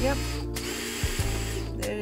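DeWalt Atomic compact cordless drill boring a pilot hole through a caster plate into particle board. The bit is biting into solid particle board rather than a hollow section. The motor runs in two spurts with a short stop about a second in.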